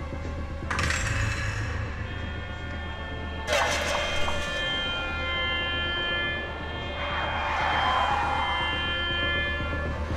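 Background music with sustained tones and swelling whooshes, over a low steady hum.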